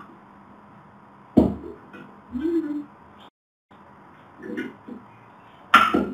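Kitchen items being handled on a counter: two sharp knocks, one about a second and a half in and a louder one near the end, with a few softer clinks and rustles between. The sound cuts out completely for a moment in the middle.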